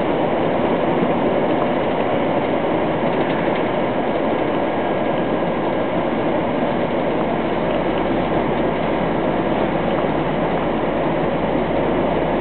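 Steady engine and road rumble heard inside a truck cab while driving, unchanging throughout.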